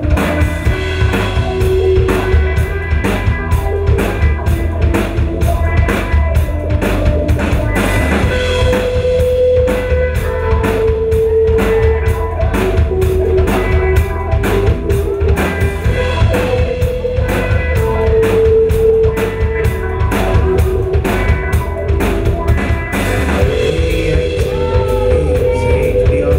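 A live rock band plays an instrumental passage: a hollow-body electric guitar plays a melody of long held notes over a steady drum-kit beat and bass.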